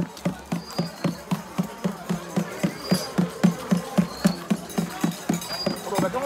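Steady, even knocking of a hand-held percussion instrument, about three strokes a second, with a short high chirp recurring every second or so.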